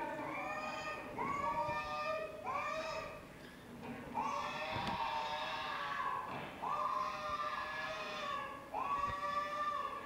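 An 18-month-old boy crying in a string of about six drawn-out, high-pitched wails, distress at being picked up and held by his mother, heard as video playback through the hall's speakers.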